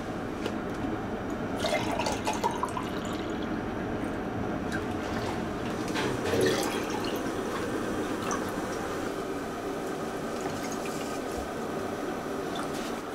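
A plastic drink bottle being handled, with a few small clicks about two seconds in. Then juice is poured from the bottle into a drinking glass, the liquid splashing and filling it.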